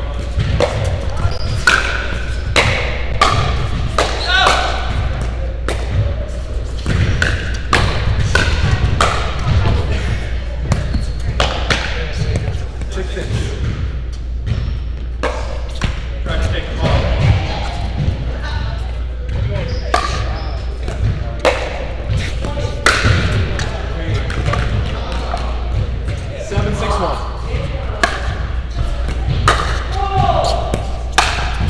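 Pickleball paddles popping against a hollow plastic ball, with the ball bouncing on the hard court, in irregular sharp knocks through a doubles rally. The knocks echo in a large indoor hall over a steady low hum, with players' voices now and then.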